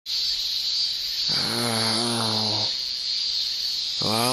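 A steady high hiss starts abruptly out of silence. About a second and a half in, a low voice gives one drawn-out groan at a near-steady pitch, lasting about a second and a half.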